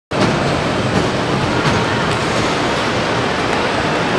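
Steady, loud wash of background noise in a busy indoor amusement park, with many distant voices blended into one din.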